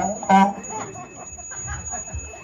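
A person's voice: two short loud syllables at the start, then fainter talk in the background with a few soft low thuds.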